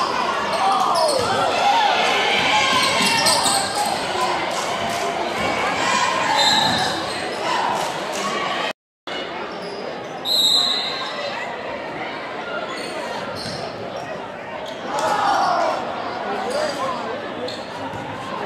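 Spectators' voices and calls in a gymnasium, with a basketball dribbled on the hardwood court; the sound drops out completely for a moment about halfway through.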